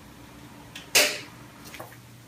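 A single sudden sharp sound, like a swish or slap, about a second in that fades within a fraction of a second, followed by a fainter one near the end, over a low steady room hum.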